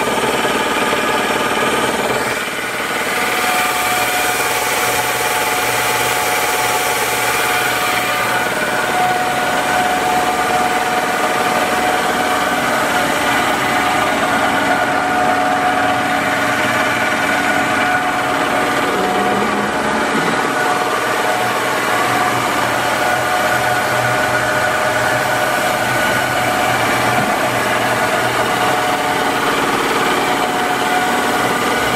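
Hockmeyer immersion mill running, its 10 HP explosion-proof motor driving the bead-filled milling head: a loud, steady machine hum with a few held whining tones, dipping briefly about two and a half seconds in.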